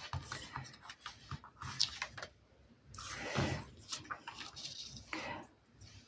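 Pieces of cardstock being handled and slid into place on a cutting mat: faint scattered paper rustles and light taps, with a louder scrape a little after three seconds in and another near five seconds.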